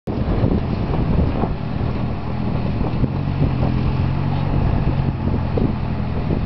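Wind buffeting the microphone outdoors over a steady low hum, with a few faint knocks.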